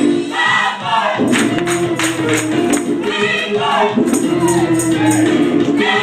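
Gospel vocal group singing live with band accompaniment. Voices rise and fall over steady held low notes, and from about a second in a high percussion instrument ticks on the beat.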